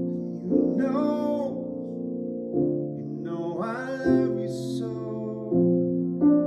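Upright piano playing sustained chords that change about every one and a half to two seconds, with a man's voice singing two phrases over it.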